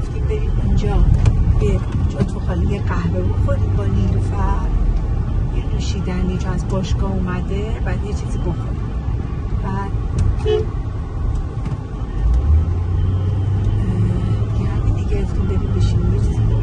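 Steady low rumble of a moving Hyundai SUV heard from inside the cabin: road and engine noise while driving, with a woman's voice talking faintly over it.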